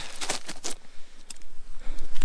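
Plastic food packaging crinkling in the hands as a wrapped Schüttelbrot flatbread is put down and a cheese packet is picked up: a quick run of crackles in the first second, then a few more single crackles.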